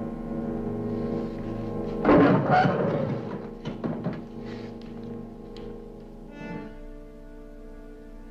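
Orchestral background music: a sustained string chord, with a loud timpani-led swell about two seconds in that dies away to a quieter held chord near the end.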